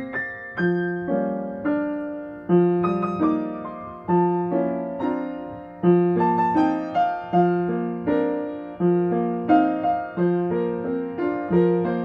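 Solo upright acoustic piano playing a steady, rhythmic pattern of chords over a repeating bass line, each struck chord fading before the next.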